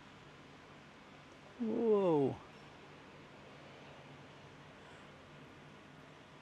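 A man's voice gives one short drawn-out exclamation about two seconds in, rising and then falling in pitch, over a faint steady outdoor background.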